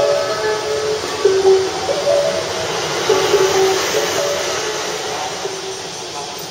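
A platform melody of short, chime-like notes at changing pitches, played over station loudspeakers. It fades out over the last couple of seconds, over a steady background noise.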